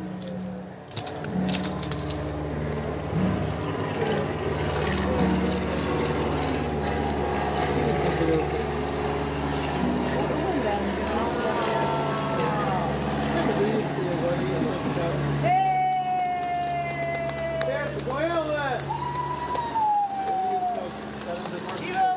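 Steady low engine drone of a plane overhead, with voices chattering under it. From about fifteen seconds in, a woman's voice holds long sung notes that slide downward.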